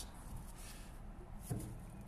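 Quiet background with faint handling noise from the camera being moved, and one soft knock about one and a half seconds in.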